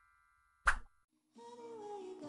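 The fading tail of a chime, then a single short pop about two-thirds of a second in: an intro sound effect. Soft background music starts about a second and a half in.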